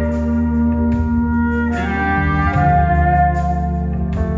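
Live band playing an instrumental passage: long held lead notes over a steady bass, with the melody stepping to a new held note about two seconds in.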